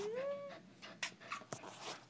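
Soft-coated Wheaten terrier whining: one short whine that dips in pitch and rises again, ending about half a second in, followed by faint rustling and clicks.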